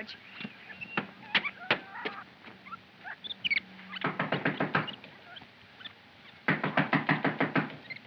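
Rapid knocking on a wooden door, in two quick bursts of about a second each, the second near the end, after a few single taps.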